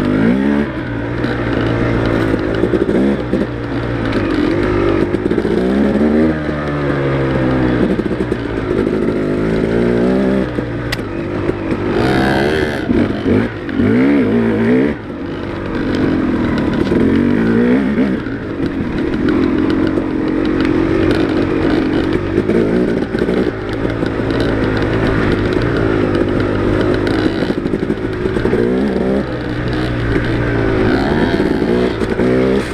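Dirt bike engine heard from on the bike, revving up and falling back over and over as the rider works the throttle and gears on the trail.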